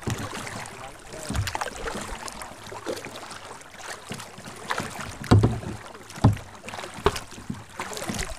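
Kayak paddles dipping and splashing in lake water, with the slosh of water around the boats and a few sharper splashes and knocks in the second half.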